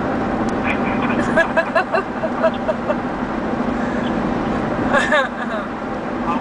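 Steady road and engine noise inside the cabin of a moving SUV, with short bits of indistinct voice about a second in and again near five seconds.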